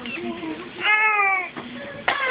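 A baby's single high-pitched squeal about a second in, lasting about half a second and falling slightly in pitch, after softer babbling.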